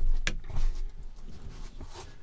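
A person climbing into a van and sitting down on its bench seat: low thumps from the floor and seat in the first second, a sharp click shortly after the start, then small knocks and clothing rustle.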